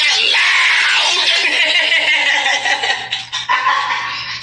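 A woman's loud, wordless shouting, breaking off near the end.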